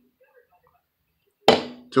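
Near silence, then a single sharp knock about a second and a half in, dying away quickly.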